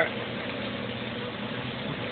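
Steady hiss and low hum at a teppanyaki griddle: food cooking on the hot plate under a running exhaust hood fan.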